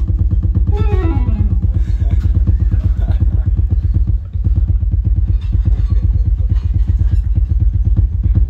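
Live trio of electric bass, drum kit and electric guitar playing a fast groove. The rapid low pulses of drums and bass dominate, recorded close to the kit with an unprocessed, crowded low end. A sliding note falls in pitch about a second in.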